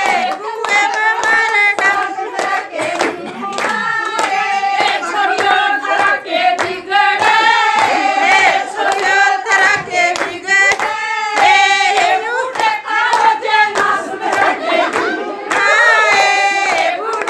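A group of women singing a Haryanvi folk song together, with steady rhythmic hand clapping keeping the beat.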